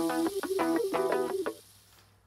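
Background music: a run of short pitched notes that stops abruptly about one and a half seconds in, leaving near silence.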